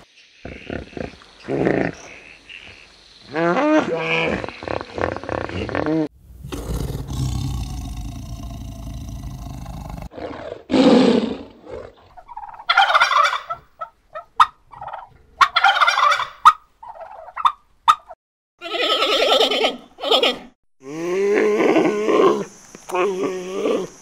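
A string of separate animal calls and growls, some pitched and some harsh, with a low rumbling noise a quarter of the way in. Near the middle come the growls and roars of a white tiger, and more calls follow toward the end.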